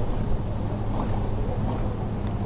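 Steady low wind rumble on the microphone, with a few faint high clicks.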